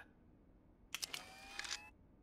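A faint, brief mechanical clicking and whirring starting about a second in and lasting about a second, with a slight rise in pitch.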